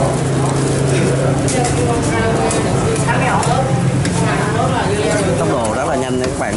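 Voices chattering in the background over a steady low hum, with short clicks and scrapes of a knife spreading filling into a split baguette.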